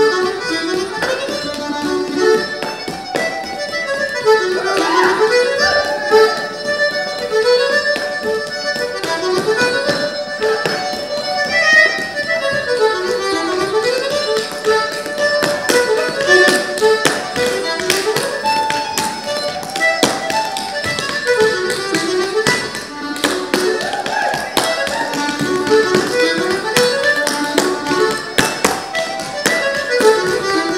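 Irish traditional dance music: a quick reel tune played live, with the dancer's shoes beating out sean-nós steps on a wooden floor in sharp, rapid taps over the music.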